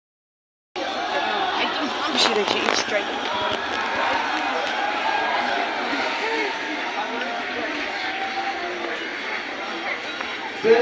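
After a moment of dead silence, a crowd of many people talks at once in a steady babble. A few sharp clicks come about two seconds in.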